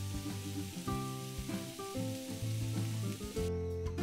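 Diced onion and grated carrot frying in vegetable oil in a pan: a steady sizzle that cuts off suddenly shortly before the end. Background music plays throughout.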